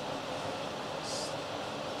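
Steady workshop background noise, an even hiss with a faint hum under it, and a brief soft hiss about a second in.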